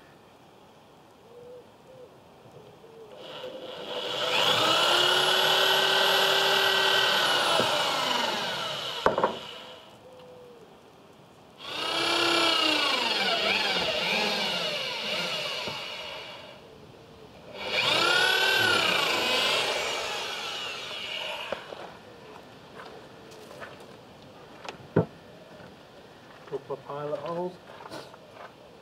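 Corded electric drill boring into timber in three runs of a few seconds each, the motor's pitch rising as it spins up and falling as it slows at the end of each run. A few light knocks from handling the tools follow near the end.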